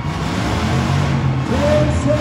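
Several demolition-derby cars and trucks with engines running and revving together, a loud, dense low rumble. About one and a half seconds in, a voice starts calling out in short rising-and-falling sounds over it.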